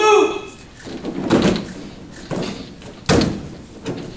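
Several thuds of a person landing on padded gym mats in jujutsu breakfalls, the heaviest about three seconds in. A voice is heard briefly at the start.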